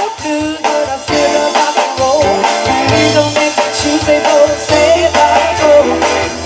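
A live blues-rock band playing: drums, bass, electric guitar and keyboard.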